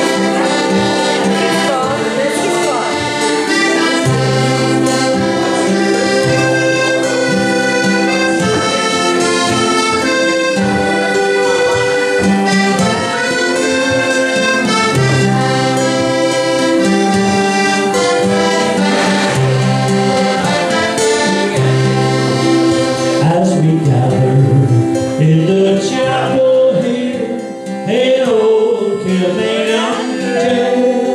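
Live folk band led by two accordions, a button accordion and a piano accordion, playing a tune in long held notes over an acoustic guitar and bass line; voices come in near the end.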